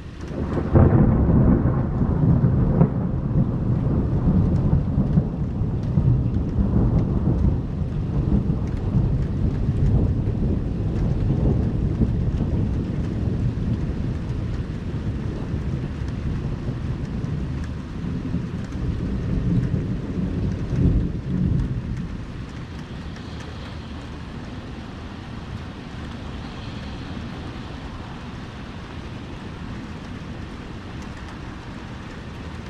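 Thunder breaking suddenly about half a second in and rolling on as a long low rumble for some twenty seconds, swelling once more before dying away, over steady rain.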